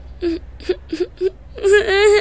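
A boy breaking into tears: four short sobbing catches, then a long wailing cry that starts near the end.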